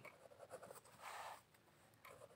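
Pen writing on notebook paper: faint scratching, with one longer stroke about a second in.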